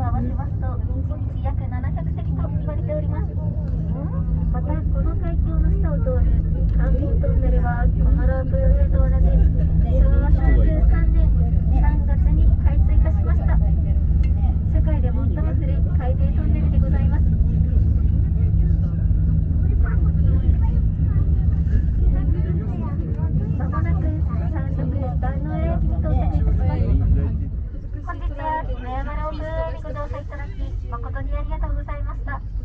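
Hinoyama Ropeway gondola cabin in motion: a steady low rumble and hum, with voices talking in the cabin. The rumble drops off sharply near the end as the car comes into the station.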